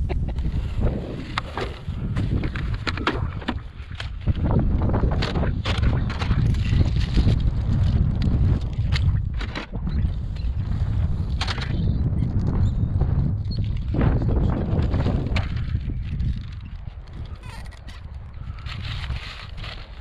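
Loose gravel crunching and clattering under feet and hands in many short irregular bursts, over a heavy low rumble of wind on the microphone.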